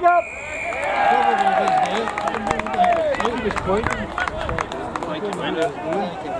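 A referee's whistle blown in one steady blast of about a second near the start, stopping play, while rugby players shout loudly over a scatter of short knocks from the contact.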